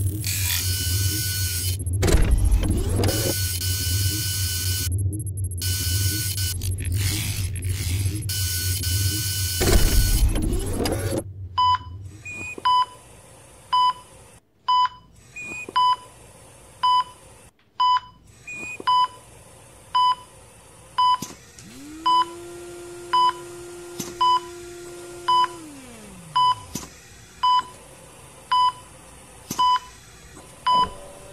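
Dense dramatic sound design with two whooshing swells, cutting off abruptly about eleven seconds in. Then an operating-room patient monitor beeps steadily about once a second, the patient's pulse. Near the end a lower tone swells in, holds for a few seconds and slides down away.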